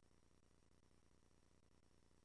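Near silence, with only a faint steady hiss.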